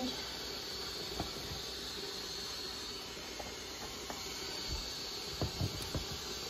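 Sausages and their fat sizzling in a frying pan on the stove, a steady hiss, with a few light clicks and taps scattered through it.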